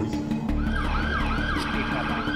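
Emergency vehicle siren sounding in quick repeated falling sweeps, about three a second, starting about half a second in.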